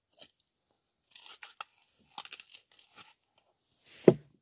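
Snow crunching and clothing rustling in short crackly bursts as a person kneeling in the snow shifts, after a light click near the start as the aluminium Trangia windshield settles on the stove base.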